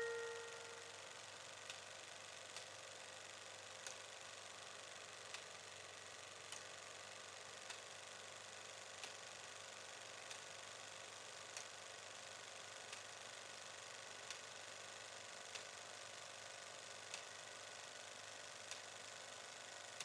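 A ringing chime note dies away in the first second, leaving a faint steady hiss with a soft tick about every second and a bit.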